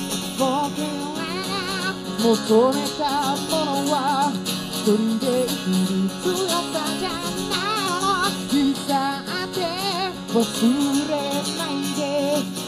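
A male singer sings a song with vibrato on his held notes, accompanying himself on a strummed steel-string acoustic guitar.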